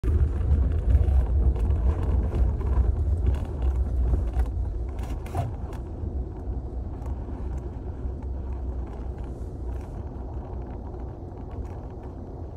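A car driving slowly over a bumpy dirt road, heard from inside the cabin: a low rumble of tyres and engine with scattered knocks and rattles from the rough surface. It is louder for the first few seconds, then eases off.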